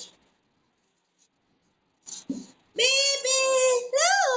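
A baby's high-pitched voice holding one long, steady note, starting near the three-second mark. It breaks off briefly just before the end and starts again.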